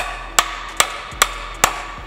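Hand hammer striking a socket to drive a reverse-lockout delete plug into a TR6060 transmission case, seating it like a freeze plug. Five sharp, even taps, about two and a half a second.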